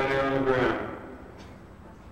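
A man's voice, drawn out, ending about a second in; the sound then fades down to faint background noise.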